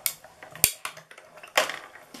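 Hand-cranked Stampin' Up Mini Cut & Emboss die-cutting machine running a plate sandwich with an egg die and cardstock through it: a sharp click a little over half a second in, a few lighter clicks, then a plastic clatter near the end as the plates come out.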